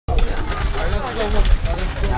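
Several people talking over one another at an outdoor food-serving line, with a steady low rumble underneath and occasional light clicks and clinks.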